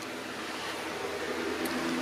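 Steady hiss with a faint low hum, growing slightly louder, with a faint click near the end.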